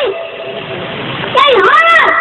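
A boy's voice through a microphone and loudspeaker; it pauses for about a second and a half, leaving background noise, then resumes loudly near the end.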